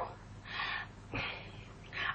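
Two short, soft breaths from a woman, about half a second apart, breathy with no voiced tone.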